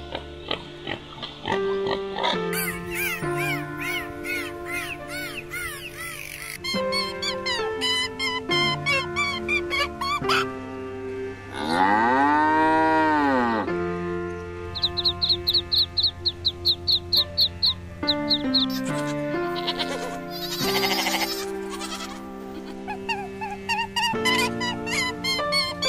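Background music with a cow mooing once about halfway through, one long call that rises and then falls in pitch and is the loudest sound.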